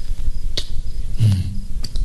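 Sharp clicks, one about half a second in and a weaker one near the end, over a steady low rumble, with a brief low hum between them.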